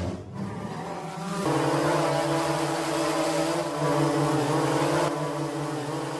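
Quadcopter drone's propeller buzz, a steady hum of several tones that wavers slightly in pitch, growing louder about a second and a half in.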